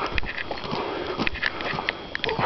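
Footsteps crunching on a dirt road, with a few sharper scuffs, and breathing close to the microphone.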